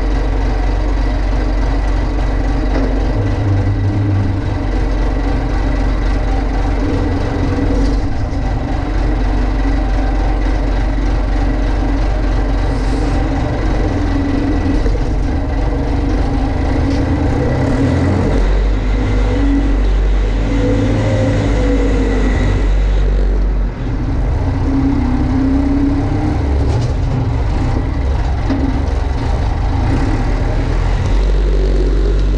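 Massey Ferguson MF50E backhoe's Perkins diesel engine running steadily as the machine drives along a dirt track, heard close up from the operator's seat. There is one brief dip in level about two-thirds of the way in.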